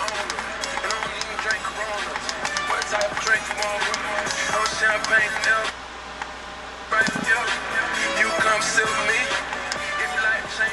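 FM radio music with vocals playing through a car stereo head unit and its speaker. The sound drops lower for about a second a little past the middle, then comes back.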